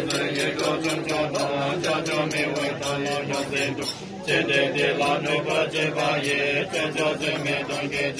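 Buddhist lamas chanting prayers in unison for a funeral rite, a low steady chant with a brief pause about four seconds in, over fast, regular percussion strikes.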